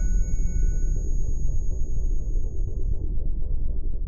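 Electronic intro music with a deep, steady rumble under it. High held tones ring over the rumble and die away within the first few seconds.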